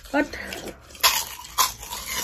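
Close-up eating sounds: two sharp wet smacks or slurps about a second in and again half a second later, as food is bitten and chewed. A brief high whine comes just before them.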